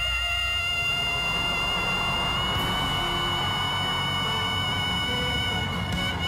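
A male singer holding one long, very high whistle-register note, steady, with a slight rise in pitch about two and a half seconds in, over a low instrumental backing.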